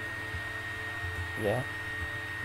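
Steady electrical hum with a constant high-pitched whine over a low noise haze, the background noise of the recording setup.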